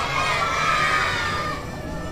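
Children shouting and screaming together, a loud burst of high voices that lasts about a second and a half, then dies away.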